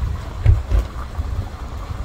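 Wind buffeting the microphone outdoors: a low, uneven rumble with two stronger gusts about half a second and just under a second in.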